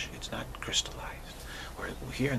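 A man speaking softly, close to a whisper, with breathy hissing consonants, over a low steady hum.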